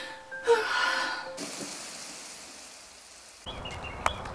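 A person's sharp, loud gasp, then a long breathy exhale fading out, as in distraught weeping. Near the end, birds start chirping outdoors.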